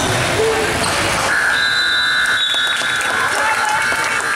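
Gym scoreboard buzzer sounding one long steady tone, starting about a second in, over crowd voices: the horn marking the end of the period as the game clock runs out.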